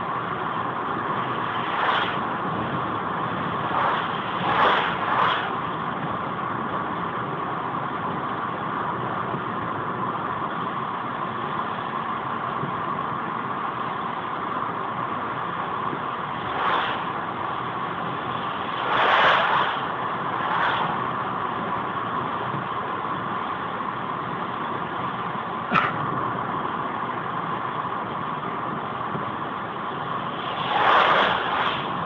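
Steady road and tyre noise inside a car cruising at about 80 km/h on wet asphalt. Oncoming trucks pass several times, each a brief swelling whoosh, and there is one short sharp click near the end.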